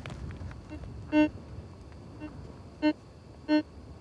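Metal detector giving short electronic beeps as its search coil sweeps over the ground: three clear beeps and two fainter ones, unevenly spaced. The beeps signal metal beneath the coil, the response the hunters look for from an iron-bearing meteorite.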